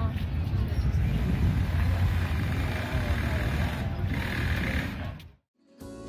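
City street ambience: a steady low traffic rumble with the voices of passers-by mixed in, cutting off abruptly near the end.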